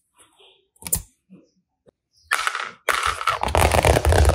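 A single sharp click, then a loud, dense run of rapid clicking and crackling from plastic toys being handled, starting a little past halfway.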